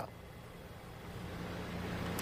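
Low, steady rumble with a faint hum from an outdoor open microphone, slowly getting louder.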